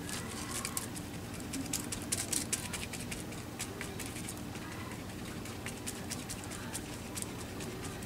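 Flat paintbrush stroking and dabbing wet decoupage medium over wrinkled paper, with many small irregular crackles and swishes as the brush works the paper down.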